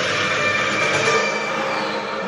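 A steady rushing noise with a faint high, level tone from the TV episode's soundtrack, holding at an even level.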